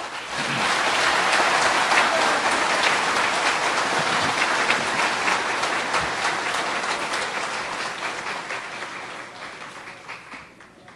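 Audience applauding. The clapping swells within the first second, holds steady, then gradually dies away toward the end.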